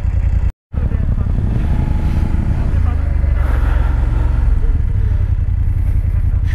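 BMW F 850 GS Adventure's parallel-twin engine running steadily as the motorcycle rides along, with a heavy low wind rumble on the microphone. The sound drops out briefly about half a second in.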